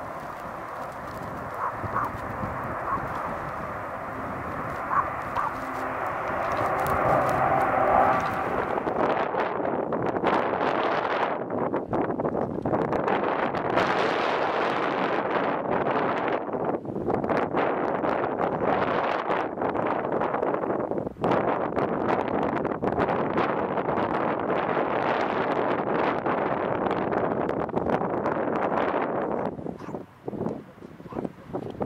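Dash 8 Q400 turboprop passing low overhead, a drone carrying steady propeller tones. About eight seconds in it gives way suddenly to a louder, rushing noise with frequent brief dropouts: wind buffeting the microphone over a Boeing 737's jet engines as it comes in to land.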